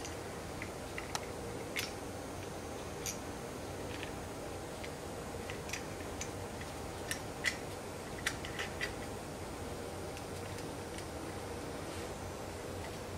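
Small, irregular metal clicks from bypass pruner halves being fitted back together by hand, freshly oiled with 3-in-1 oil; the loudest few come about seven to nine seconds in, over a faint steady hum.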